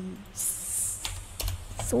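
A few light, sharp clicks close to the microphone, like tapping or typing, with a short breathy hiss just before them.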